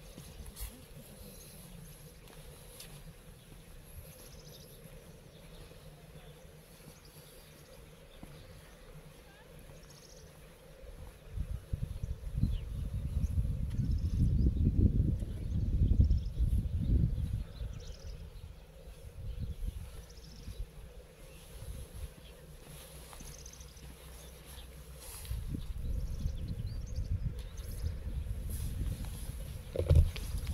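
Wind gusting on the microphone as an irregular low rumble, which swells about eleven seconds in and again near the end, with faint high chirps scattered over the quieter stretches.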